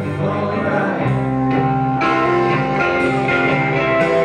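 Live band music: accordion and guitar playing an instrumental passage between verses, with held chords over a low bass line that moves to a new note about a second in.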